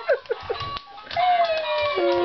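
Laughter, then music from a Dora play CD toy: a long sung note that slides slowly down in pitch, leading into the rest of the tune.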